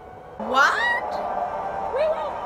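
A woman's short, high-pitched squeal that rises in pitch, about half a second long, a little under half a second in.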